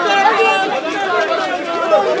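A crowd of men talking over one another, many voices at once with no single voice standing out.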